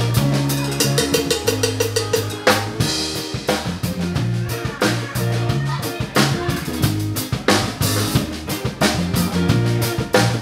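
Live band playing: a drum kit with regular kick and snare hits over sustained electric bass notes and electric guitar.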